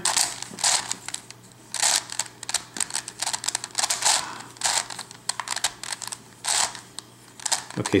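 Plastic pieces of a Circle Crystal Pyraminx twisty puzzle clicking and scraping as its faces are turned by hand, in a quick series of short turns.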